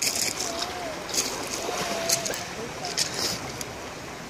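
Small waves washing onto a pebble shore, with irregular soft splashes over a steady hiss of sea.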